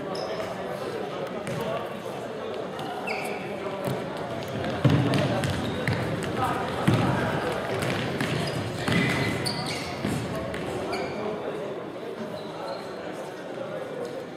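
Futsal being played in an echoing sports hall: a ball kicked and bouncing on the wooden floor, with loud thuds about five, seven and nine seconds in. Short shoe squeaks on the floor and indistinct players' voices are heard throughout.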